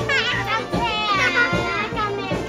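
Young children's high-pitched voices, with sweeping rises and falls in pitch, over steady background music.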